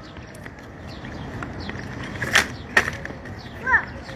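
Wheels rolling over hard pavement, a steady rumble with two sharp knocks a little over halfway through. A brief voice sound comes near the end.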